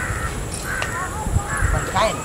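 A bird calling, three short calls: at the start, just under a second in, and near the end.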